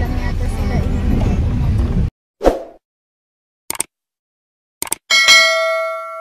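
Subscribe-button animation sound effects: a short swish, two quick double clicks, then a bright bell ding with several ringing tones near the end. Before them, about two seconds of music and car noise cut off abruptly.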